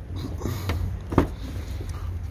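A car's rear door being opened: a few light knocks, then one sharp click of the door latch about a second in, over a low steady rumble.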